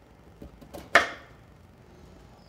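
Kitchen knife chopping cauliflower florets on a bamboo cutting board: one sharp knock of the blade striking the board about halfway through, with a couple of faint taps before it.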